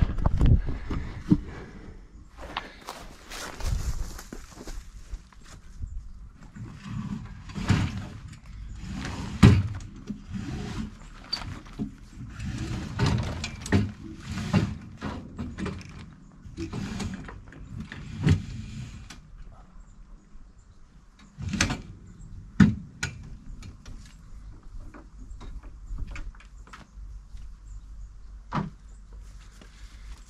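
A Mirror dinghy's gaff mainsail being hoisted by hand: irregular rustling and scraping of sail cloth and rope. The handling sounds thin out in the last third, leaving a few sharp knocks.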